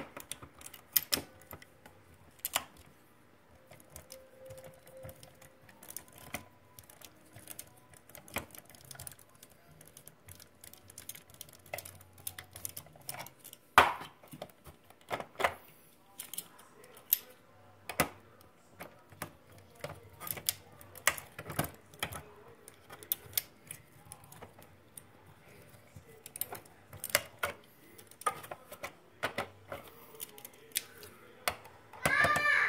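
Screwdriver backing screws out of an R-Com Pro 20 incubator's plastic housing, with irregular sharp clicks and clatters of the tool, screws and plastic parts being handled. The loudest click comes about 14 seconds in.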